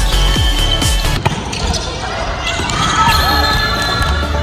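Background music over a volleyball rally, with one sharp smack of the volleyball about a second in, likely the point-winning spike. Players' voices rise near the end as the point is won.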